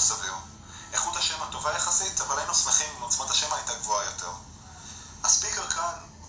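A man talking, played back from a recorded video clip through the Samsung Omnia 7 smartphone's small built-in loudspeaker.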